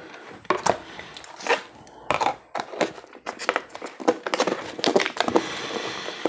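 Thin clear plastic food container being handled, its walls crinkling and crackling with irregular clicks and taps.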